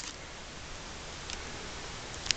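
Steady low hiss of room tone, with one faint tick partway through from a hand handling a shrink-wrapped LP record sleeve.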